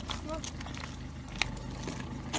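Handcuffs clinking as they are fastened on a man's wrists behind his back, with one sharp metallic click about one and a half seconds in, over a steady low rumble.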